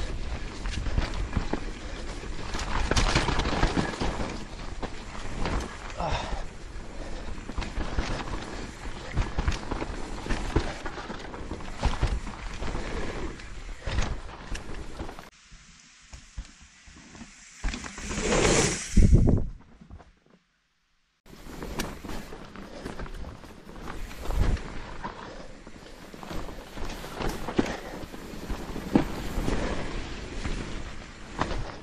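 Mountain bike riding down a dirt forest trail: tyre noise, wind on the microphone and the clatter of the bike over the ground, with many short knocks. About two-thirds of the way through, the bike passes close by in a loud swell of noise that rises and falls, then the sound drops out for about a second before the riding noise resumes.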